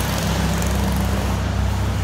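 An engine idling steadily, a low even hum with a faint pulse and no change in pitch.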